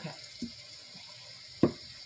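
Steady rain sound from a sound machine, a soft hiss throughout, with a small knock about half a second in and a sharp, louder knock about a second and a half in as something is set down on the work table.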